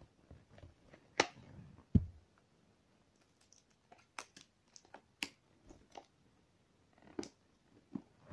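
Scattered clicks and taps of a hard plastic toy perfume-bottle container being handled as its lid is worked open, with two sharper clicks about one and two seconds in and smaller ticks later.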